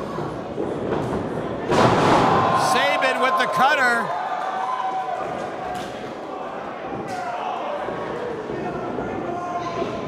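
A wrestler's body hitting the wrestling ring with one loud slam about two seconds in, the boom hanging briefly in the hall. Drawn-out shouting voices follow.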